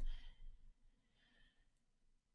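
Faint breathing between sentences: a short soft exhale right at the start, then a fainter breath about a second and a half in.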